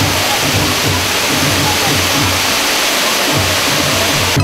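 Waterfall fireworks hung around the rim of a giant festival umbrella (karakasa mantō) hissing steadily as sparks pour down in curtains. Underneath runs a steady low drum beat from the festival's hayashi music.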